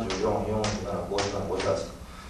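Three sharp taps about half a second apart, from a pointer stick tapping the projected table, over a man speaking Japanese.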